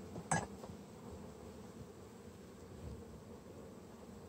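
Low, steady hum of honey bees from an open hive. About a third of a second in comes one short, sharp scrape of a metal hive tool between the wooden frames.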